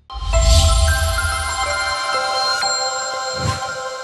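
Short electronic channel-logo music sting. A deep hit opens it, then held bright tones stack up one after another, with a second low thump near the end.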